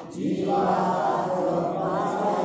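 A group of voices chanting a line of a Sanskrit verse together in unison, coming in sharply and holding steadily: the congregation repeating the verse after the reciter.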